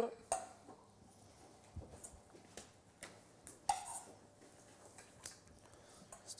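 A few light clinks and clicks of a metal spoon against a stainless steel mixing bowl and serving ring while food is spooned onto a plate, with quiet room tone between them.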